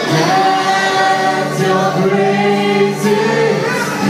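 Several voices singing together as a group, holding long notes in a worship song.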